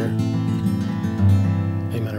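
A steel-string acoustic guitar fingerpicked in an alternating-bass pattern, ringing notes through a D/F♯ to G chord change.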